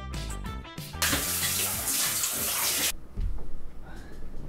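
Handheld shower head spraying water onto a sneaker on a tiled shower floor, a loud steady rush starting about a second in that cuts off suddenly about two seconds later. A dull low thump follows.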